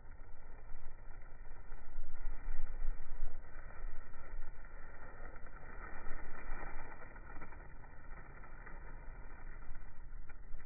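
Plastic grocery bags rustling and crinkling as they are twisted by hand into a bowstring, the noise swelling and easing with each twist.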